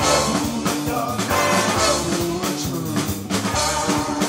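Live rock band playing: drum kit, electric guitar and bass with trumpet and saxophone, and a male lead vocal.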